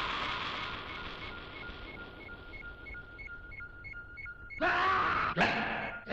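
A spinning whoosh fades out, giving way to Ultraman's colour-timer warning: repeating high beeps on two alternating pitches, the signal that his energy is running low. Near the end comes a loud cry that falls in pitch, followed by a sharp swish.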